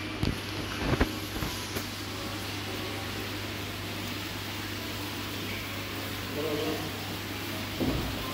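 Steady hum and hiss of aquarium aeration, air bubbling from airstones in the tank. A few sharp knocks come within the first second and a half.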